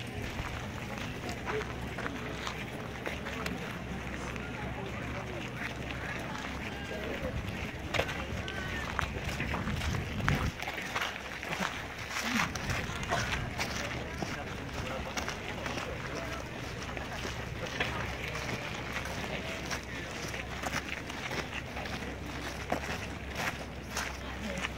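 Footsteps crunching on a gravel and dirt lot as a group walks, with indistinct voices chattering in the background and a low steady rumble underneath.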